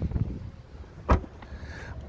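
A single short, sharp thump about a second in, over faint low rumbling noise with no speech.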